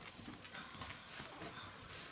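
A young puppy's claws clicking faintly and irregularly on a wooden floor as it walks.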